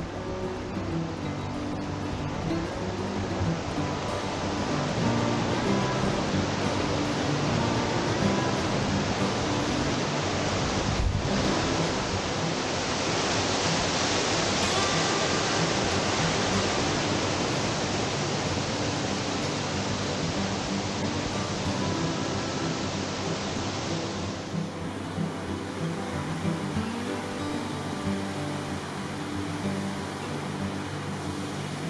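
Rushing water of a mountain stream and waterfall, a steady hiss loudest about halfway through, under background music with held notes. The water sound falls away a little after twenty seconds in, leaving the music.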